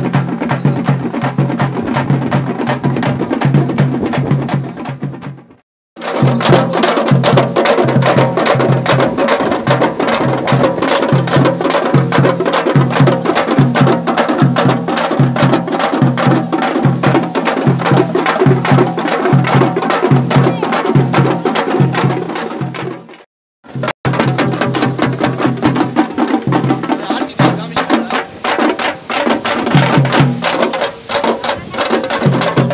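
A group of Tamil parai frame drums beaten with sticks in a fast, loud, driving rhythm. The sound cuts out briefly twice, about six seconds in and again about twenty-three seconds in.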